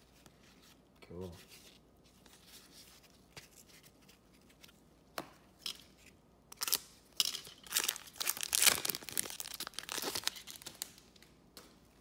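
A trading card pack's foil wrapper being torn open and crinkled: a run of quick rips and crackles lasting a few seconds, starting about halfway through and loudest near the end.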